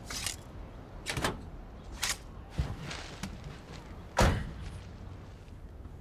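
Car door being handled: several knocks and clunks, the loudest a sharp thud about four seconds in, over a low steady rumble.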